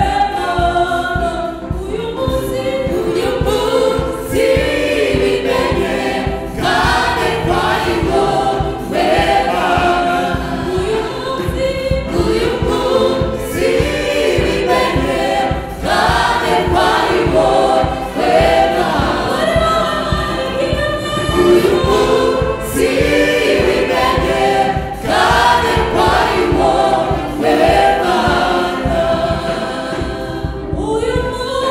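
Gospel choir of mostly women singing together, with several voices amplified through handheld microphones.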